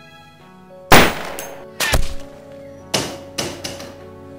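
Film gunshot sound effects over sustained music: five sharp shots, the loudest about a second in, a close pair just before two seconds, and two more in the last second.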